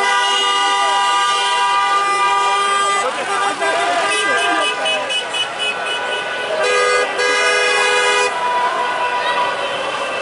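Car horns held in long, steady blasts, several overlapping, sounding again about seven seconds in. Between the blasts, a crowd shouts and chants.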